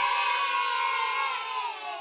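A crowd of high voices cheering in one long held cheer, which sinks in pitch and fades out near the end.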